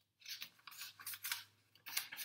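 Paper pages of a picture book being handled and turned: a quick run of short dry rustles, the loudest near the end.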